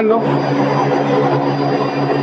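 A rotary screw air compressor driven by a permanent-magnet motor on a variable-frequency drive, running loaded and building pressure at about 7 bar. Its steady machine hum blends with the noise of its cooling fan.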